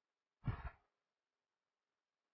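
A single short sigh-like breath out, under half a second long, about half a second in. Otherwise near silence.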